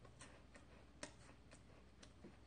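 Faint crisp crunches of a wafer cookie being chewed with the mouth closed: a few light clicks, the loudest about a second in.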